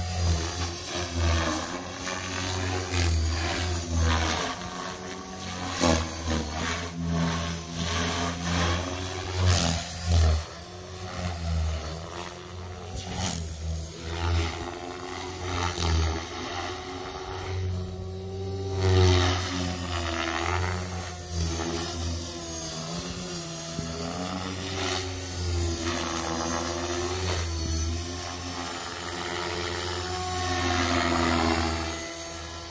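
Electric Blade Fusion 550 RC helicopter in flight: rotor blades and motor whine going up and down in pitch and loudness with several louder swells as it manoeuvres.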